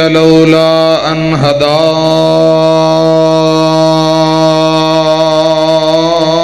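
A man chanting an Arabic durood in a long, drawn-out melodic line: a few short gliding phrases, then one long held note, over a steady low drone.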